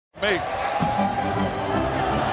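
NBA game sound in an arena: a basketball bouncing on the hardwood court over a steady crowd hum, with a commentator's brief word at the start.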